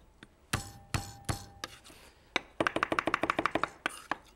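Chef's knife mincing garlic on a wooden butcher-block board: a few separate knocks, then just over a second of rapid chopping, about a dozen strokes a second, near the end.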